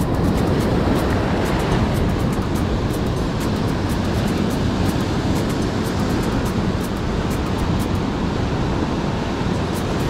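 Surf breaking and washing over rocks, a steady loud rush of water, with background music under it.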